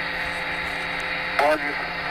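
Apollo 11 radio transmission of Neil Armstrong's first words on the Moon, played from a phone speaker: steady static hiss and hum in the pause between phrases. Near the end comes the word "one" of "one giant leap for mankind".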